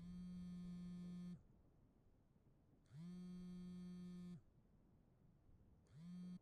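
Mobile phone buzzing on vibrate with an incoming call: two long buzzes about a second and a half apart, each slightly rising in pitch as it starts. A third buzz begins near the end and is cut short as the call is answered.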